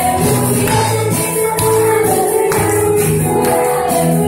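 A group of people singing a lively praise song together over amplified band music with a steady beat and bright jingling percussion.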